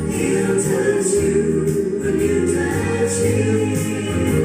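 Gospel singing in church: a man singing through a hand-held microphone, with other voices joining in, over instrumental backing.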